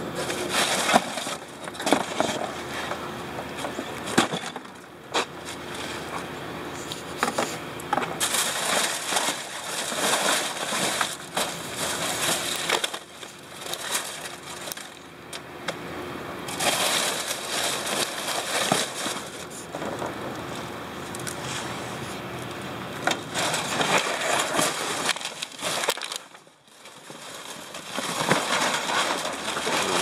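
Cardboard, plastic bags and paper rustling, crinkling and crunching in uneven bursts as gloved hands dig through dumpster debris, with scattered clicks and knocks from the stiff packing material being moved. The handling pauses briefly a few seconds before the end.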